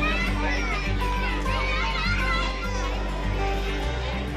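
Children's voices chattering and shouting over steady background music, with a change in the sound just before the end where the footage cuts.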